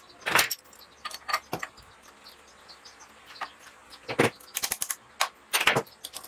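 Metal hand tools and small engine parts clinking and clattering against each other during hand disassembly of a small petrol generator engine. The clinks come singly at first, then crowd together in the second half.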